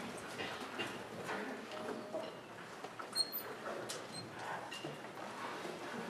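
Quiet pause in a hall before a jazz band starts to play: low room noise with scattered soft clicks and shuffles of musicians and audience settling, and a brief high squeak about three seconds in. No music is playing yet.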